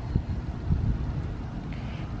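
Low, uneven rumble of outdoor background noise, with no distinct event standing out.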